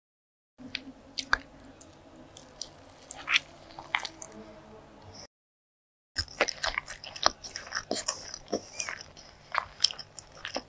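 Close-miked chewing of soft chocolate-glazed sponge cake: sticky, wet mouth clicks and smacks. The sound drops to dead silence for about a second midway, then the chewing resumes.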